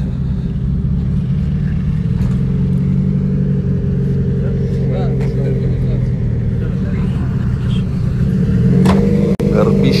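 Nissan Skyline's RB26 straight-six with a large single turbo idling steadily, the pitch edging up slightly near the end.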